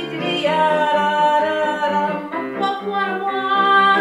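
A woman singing long held notes without words over an instrumental accompaniment, in a live cabaret-style comic song.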